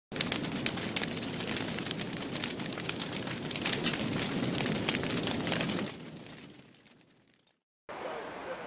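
Fire sound effect: a steady rush of flames dense with sharp crackles, fading away about six seconds in and ending in silence just before the end.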